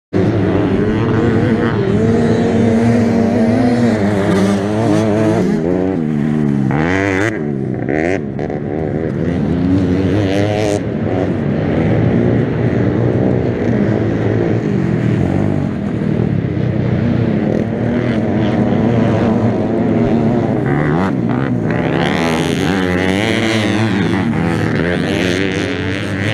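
Youth racing ATV engine running hard, its pitch rising and falling with the throttle over rough dirt track. Near the end a quad passes close by, louder, with a rise and fall in pitch.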